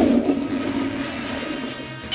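A toilet flushing: a sudden rush of water that starts abruptly and tails off over about two seconds, with background music underneath.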